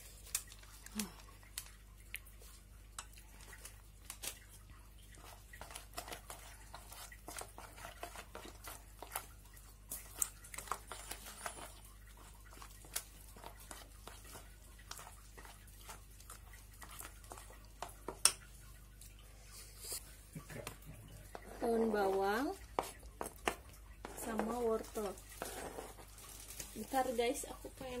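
Melamine spoon stirring a thick seasoning paste in a stainless steel pot, in many short scraping clicks against the metal. A packet crinkles near the start. In the last several seconds a person's voice sounds a few times.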